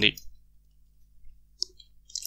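A pause in the narration: near silence over a faint steady low hum, with a single short computer mouse click about a second and a half in.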